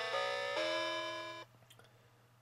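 Electronic tune from the Megcos musical telephone toy's sound box: a melody of held notes, one after another, that stops abruptly about one and a half seconds in. A few faint clicks follow.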